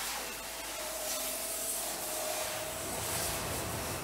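Steady hiss of a paint spray gun coating a ship's hull, with a faint steady hum under it that fades out near the end.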